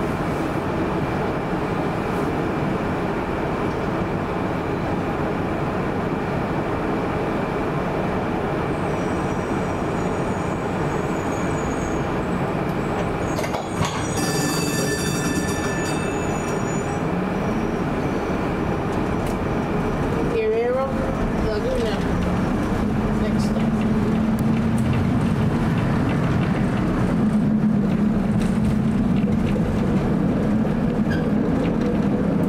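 1947 PCC streetcar stands with its equipment running, then moves off. There is a brief high ringing about halfway through. After that a low motor whine rises slowly as the car accelerates along the rails.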